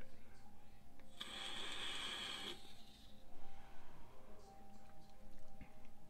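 A hit from a Digiflavor Mesh Pro mesh-coil rebuildable dripping atomizer fired at about 173 watts: a hiss of the coil firing and air being drawn through it begins about a second in and lasts about a second and a half.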